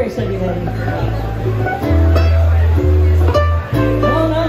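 Small acoustic band playing live: strummed and plucked ukuleles and guitar over deep, held bass-ukulele notes that move in steps, in a slow song's instrumental passage between sung lines.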